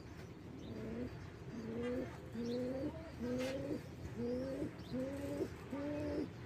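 Domestic pigeon giving a run of low, slightly rising coo-like calls, about seven in a row under a second apart. Faint high peeps sound above them.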